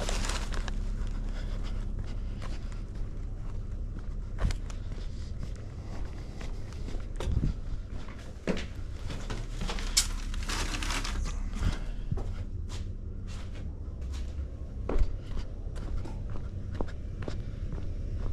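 Footsteps on a concrete front walk, going up to a house's door and back, with scattered clicks and short rustles over a steady low hum.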